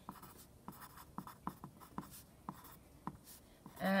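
Pencil writing on lined notebook paper: a run of short, irregular scratches as words are written out.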